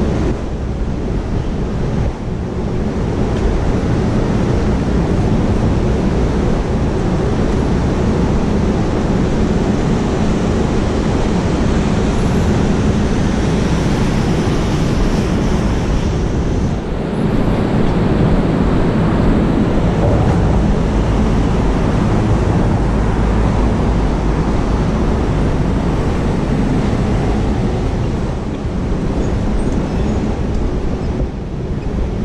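Steady city street noise: traffic rumble mixed with wind buffeting the microphone.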